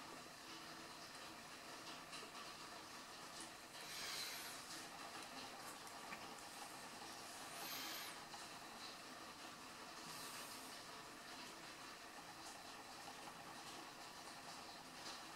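Soldering on guitar wiring, mostly quiet, with three short, faint hisses about four, eight and ten seconds in: solder flux sizzling under the soldering iron.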